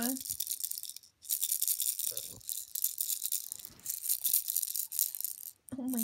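Plastic baby rattle toy shaken by hand: a continuous bright, high-pitched rattling of loose beads inside it. It breaks off briefly about a second in and again near the end.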